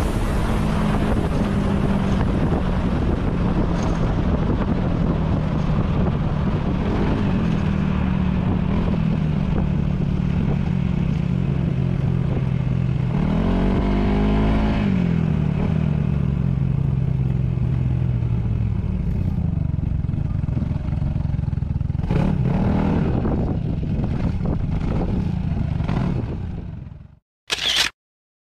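Yamaha Majesty S scooter's 155 cc single-cylinder engine running under way, heard over road and wind noise; its note sinks slowly, swells up and back down about halfway through, and fades out near the end.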